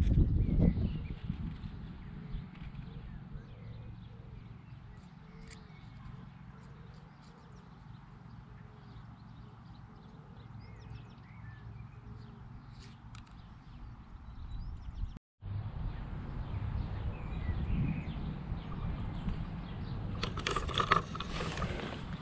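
Wind buffeting the camera microphone: a steady low rumble with gusts, which drops out for a moment about fifteen seconds in.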